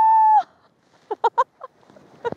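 A high, drawn-out chicken-like call that rises and then holds steady, followed about a second later by three quick clucks.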